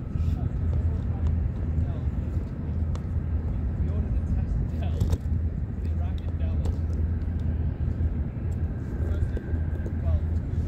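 Steady low rumble of outdoor waterfront city ambience picked up on a phone microphone, with a few faint, brief sounds above it.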